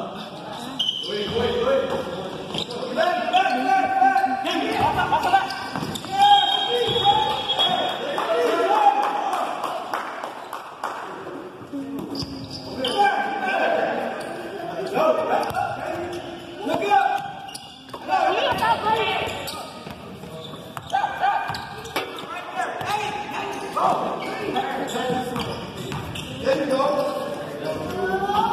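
A basketball bouncing on a hardwood gym floor during play, with voices calling out across a large echoing hall.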